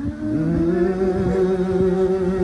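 Congregation voices humming long, steady notes, with a pitch sliding up into a held note about half a second in. A few light thumps sit underneath.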